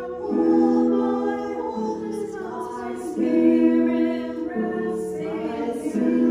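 An a cappella choir singing slow sustained chords, the harmony shifting to a new chord about every one and a half seconds.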